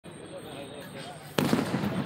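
A firecracker goes off with a sudden loud bang about one and a half seconds in, leaving a rumbling noisy tail, over a background murmur of people's voices.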